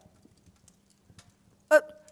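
A woman's short, high-pitched wordless vocal sound, like a brief 'hm?', near the end, over sparse faint clicks.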